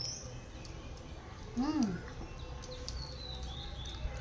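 Short, high bird chirps in the background over a steady low hum, with one brief voiced sound, rising then falling in pitch, about one and a half seconds in.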